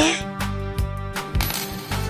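A coin dropping onto a tabletop with a brief metallic clink, over background music.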